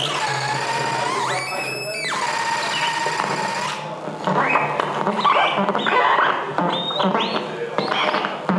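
Amplified prepared wooden box with metal rods and springs played live as a noise instrument: a held squealing tone that sweeps sharply upward and settles again, then from about halfway a busy run of short rising squeals and scrapes.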